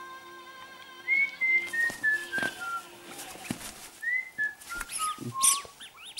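Squeaky rubber duck toy in a blue-fronted amazon parrot's beak, giving high whistle-like squeaks. After a held note there are two runs of short notes, each stepping down in pitch, with a couple of sharp high chirps near the end.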